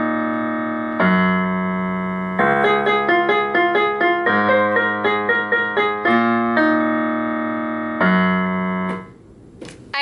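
Casio electronic keyboard played with a piano sound: a song of long held chords alternating with quicker runs of notes. The playing stops about a second before the end, followed by a couple of faint clicks.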